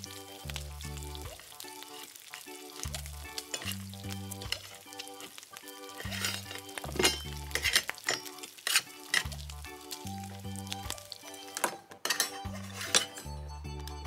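A frying sizzle sound effect plays, standing in for bacon cooking, since the bacon is plastic, over background music. A toy spatula clicks against a small metal pan a few times in the middle and again near the end.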